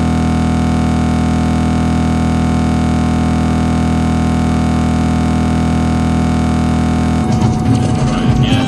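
A loud, steady electronic drone: a dense buzzy chord of many held tones, heaviest in the bass, that does not change at all. About seven seconds in it gives way to a busier, shifting layered music mix.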